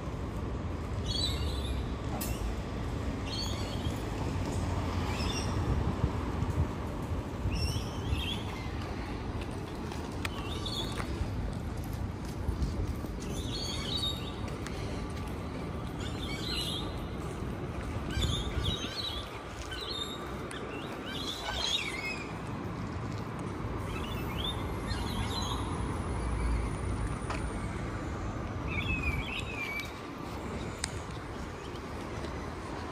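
City ambience: a steady low rumble of traffic, with birds in the trees overhead calling in short chirps every second or two.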